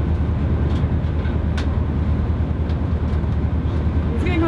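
Class 221 Voyager diesel train running, heard from on board: a steady low engine hum and rumble with a few faint clicks.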